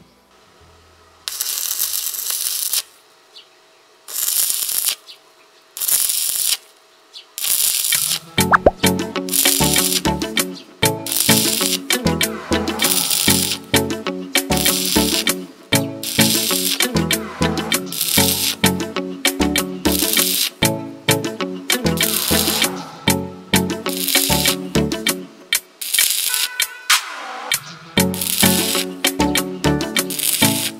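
Stick-welding arc crackling in short bursts of hiss as the coated electrode is struck and run on steel square tube. About eight seconds in, background music with a steady beat comes in over the continuing arc.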